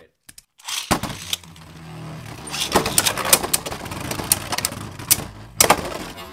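Two Beyblade Burst tops launched into a clear plastic stadium: sharp clicks about a second in as they land, then a whirring spin with rapid clacking as they collide, and a loud knock near the end.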